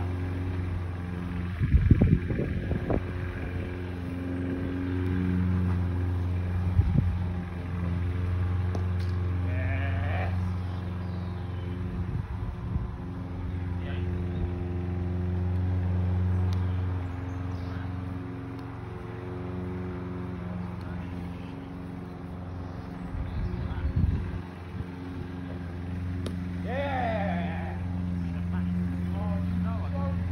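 A steady engine-like hum with several even tones runs under everything, broken by a few short dull thumps, the loudest about two seconds in and others near seven and twenty-four seconds. There are two short rising-and-falling calls, one about ten seconds in and one near the end.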